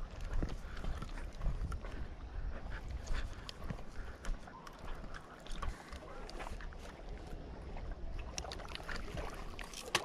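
Irregular clicks and rattles of a spinning reel being handled and cranked while playing a hooked carp, over a steady low rumble of wind on the microphone.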